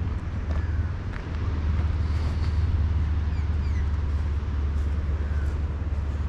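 Wind buffeting the microphone as a steady low rumble, with a few faint high chirps over it.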